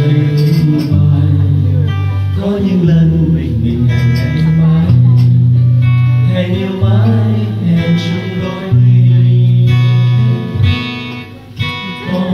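A man singing to his own acoustic guitar, strumming slow, sustained chords that change every second or two. The sound dips briefly near the end.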